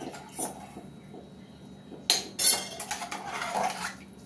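Steel spoon clinking and scraping against the inside of an aluminium pressure cooker as sambar is stirred, with two sharp knocks about two seconds in.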